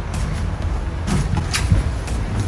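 Steady low background rumble with a few light clicks and knocks.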